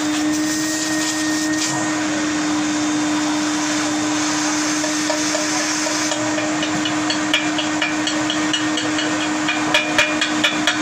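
Steady whir of a running machine motor with a constant hum, during repair work on a pressing machine. From about six seconds in, a quick light clicking at about four or five a second joins it, with a few sharper knocks near the end.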